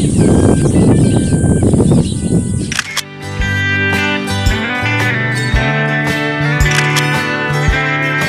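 Wind noise on the microphone with cliff swallows twittering. About three seconds in it cuts abruptly to background music with steady notes and a beat about once a second.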